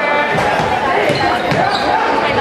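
A basketball bouncing on a hardwood gym floor during live play, under the voices of players and spectators echoing around the gymnasium.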